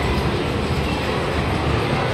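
Steady low rumble and background noise of a busy indoor shopping mall, with no distinct event standing out.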